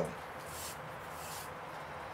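A man's voice ends right at the start, then a faint, steady background hiss of open-air ambience with no distinct events.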